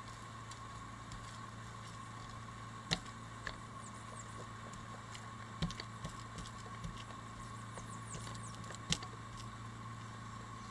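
A small resin roller being worked over wet fiberglass mat on a fiberglass chair shell, with a few sharp clicks, the loudest about three seconds apart. A steady low hum runs underneath.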